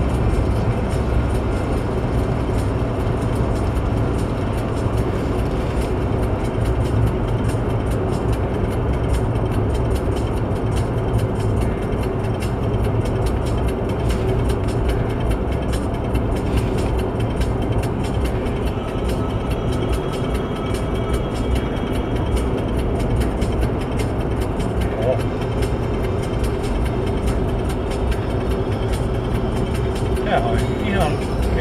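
Steady road and tyre noise heard inside a car's cabin, from new studded winter tyres running on an ice-glazed motorway at about 80–90 km/h, a low, even rumble.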